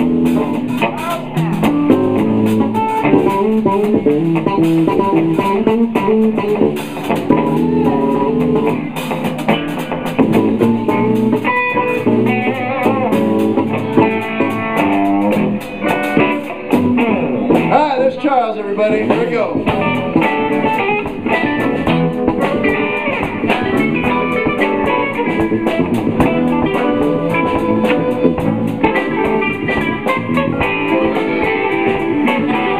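Live blues band playing: electric guitars and bass guitar over a drum kit, with bent, gliding notes in the middle.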